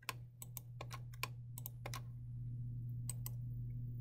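Quick clicking at a computer: about ten sharp clicks in the first two seconds and two more close together past the three-second mark, over a steady low hum.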